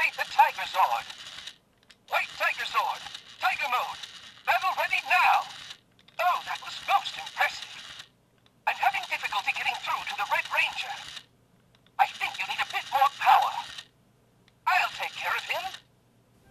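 Bandai Legacy Saba talking saber's built-in speaker playing its recorded Saba voice phrases one after another, with short pauses between them. The voice sounds thin, with no bass. The lines are re-recorded by the show's original voice actor.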